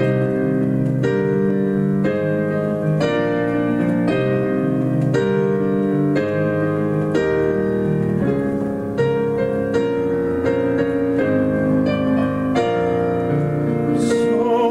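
Solo piano instrumental passage: sustained chords with new notes struck about once a second, no singing.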